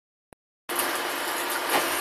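A single short click, then a steady hiss that starts abruptly about two-thirds of a second in and holds evenly: the room and microphone noise of a recording starting up.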